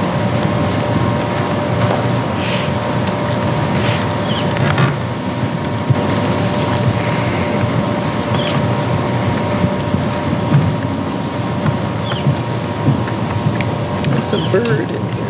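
Steady low background rumble with a faint steady hum tone running through it, and a few faint brief sounds on top.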